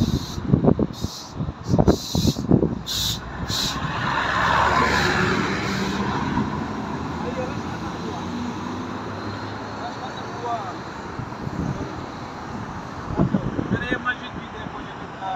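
A car passing on the road, its noise swelling to a peak about four or five seconds in and fading slowly into steady traffic noise. A man's voice calls out loudly at the start.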